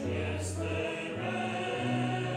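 Church congregation singing a hymn together with grand piano accompaniment, in long held notes.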